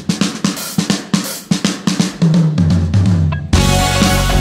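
Rock drum kit playing a break between vocal lines: a quick run of snare, kick and cymbal hits. The bass guitar comes back in about two seconds in, and the full band comes back in just before the end.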